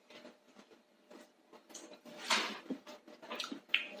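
Mouth sounds of someone tasting chili paste: soft lip smacks and clicks, with a short breath or sniff about two seconds in.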